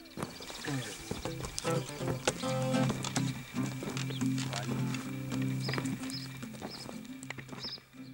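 A sound-effects bed of animal calls and voices over a steady low musical drone, with short clicks throughout and repeated high bird chirps from about halfway through.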